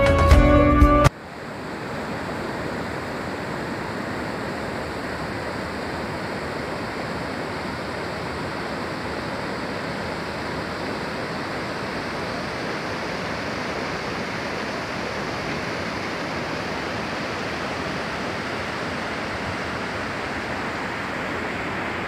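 Music cuts off abruptly about a second in, and is followed by a steady, even rush of river water pouring over a low stone weir.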